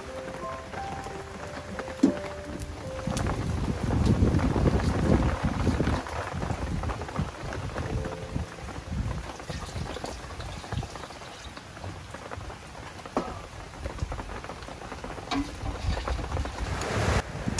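Cooking noise at a wood-fired clay stove: a rain-like hiss of sizzling with scattered crackles. It is loudest a few seconds in, then settles lower. Background music fades out over the first few seconds.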